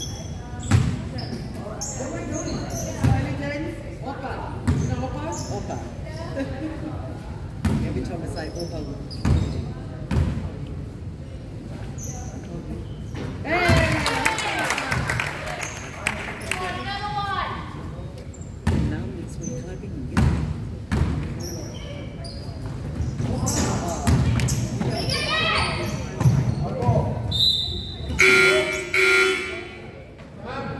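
A basketball bouncing on a gym's wooden floor, with scattered thuds and the voices of players and spectators echoing in the hall. A steady buzzer-like tone sounds for about two seconds near the end.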